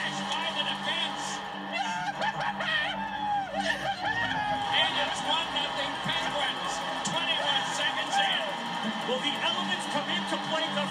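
Indistinct voices over background music, heard through a television speaker.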